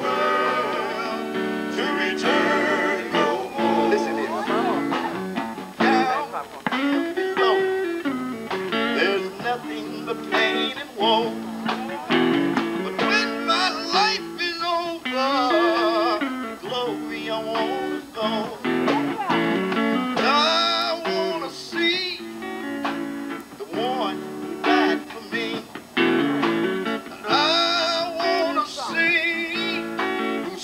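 Male vocal group singing into microphones over a PA: a lead voice with wavering held notes over the others' harmonies, with instrumental accompaniment that includes guitar.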